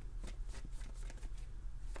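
A deck of tarot cards being shuffled by hand: a rapid, irregular run of small card clicks and flutters.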